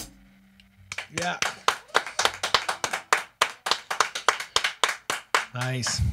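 Song ends with a sharp cut-off, then a small group of people clap briefly in a small room for about four and a half seconds. A man's voice comes in near the end.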